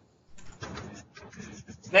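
Faint, indistinct murmuring voices in a classroom, with no clear words, starting a moment in after a brief hush.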